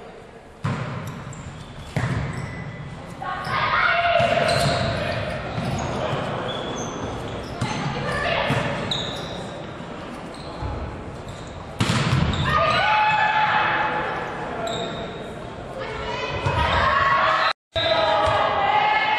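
Volleyball rally in a gymnasium: several sharp thuds of the ball being struck, under continuous shouting from players and spectators. Everything echoes in the large hall.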